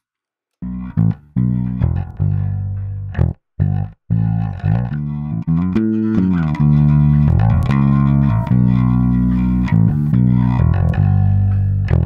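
Electric bass guitar line played back, with a few brief stops in the first four seconds and notes gliding up and down in pitch about halfway through. Its tone is being reshaped by Melodyne's Dynamics macro, putting more weight on the note attacks and less on the sustain.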